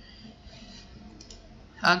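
Faint computer mouse clicks over a low steady hiss of room tone, with a man's voice starting near the end.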